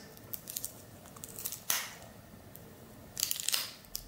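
Wrapper of a 1988 Topps baseball sticker pack being torn open by hand, crinkling and tearing in short bursts: once a little before halfway and again in a longer run near the end.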